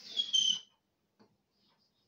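Chalk squeaking on a blackboard as a circle is drawn: a high, thin, slightly rising squeal for about half a second, then quiet apart from one faint tap about a second in.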